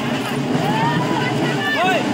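Crowd of people shouting and calling, the voices overlapping and rising and falling in pitch, over a steady low running noise.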